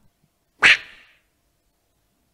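A single short, loud vocal burst from a man into a handheld microphone, like a sharp laugh or exclamation, a little over half a second in, dying away quickly.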